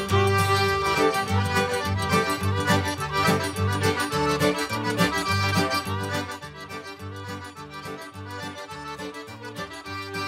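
Cajun song played on accordion with a steady bass beat, the music getting quieter about six seconds in.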